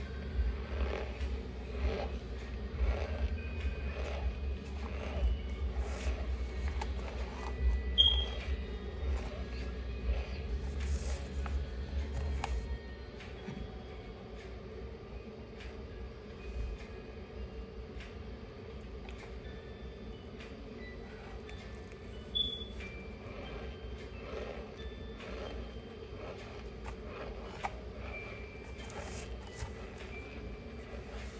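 Mouth sounds of someone chewing a mouthful of dry Maizena cornstarch: a string of small crunching clicks. A low rumble underneath stops about twelve seconds in.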